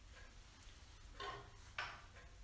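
Faint handling sounds from the storytelling materials: two brief soft knocks, one a little past halfway and a sharper one near the end, against a quiet room.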